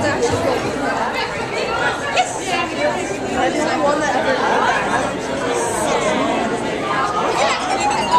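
Several people talking at once, overlapping chatter echoing in a large hall.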